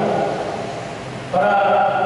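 A man's voice through a microphone and loudspeakers, chanting in long held notes. One note fades about a second in and a louder one starts just after.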